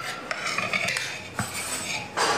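Cutlery clinking and scraping against a plate or bowl, with a few sharp clicks, the clearest about a second and a half in.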